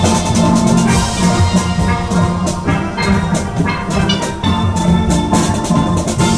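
Steel band playing a lively tune on steel pans, ringing pitched notes over a steady drum beat.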